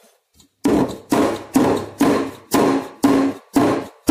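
A metal multicooker inner pot full of cake batter knocked down on the counter seven times, about two knocks a second, each with a short hollow ring, to settle the batter and drive out air bubbles.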